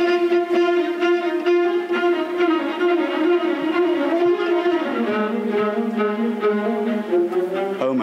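Viola section of a string orchestra playing a bowed passage: a long held note, then a step down to a lower held note about five seconds in.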